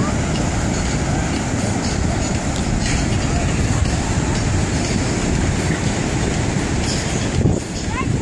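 Steady wind buffeting the microphone, with ocean surf beneath it.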